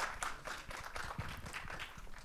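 Audience applauding: many hands clapping steadily.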